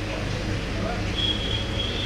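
A steady low mechanical hum, with a thin high-pitched tone coming in about a second in and holding steady.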